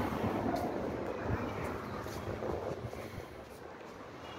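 Street traffic noise, a passing vehicle slowly fading away.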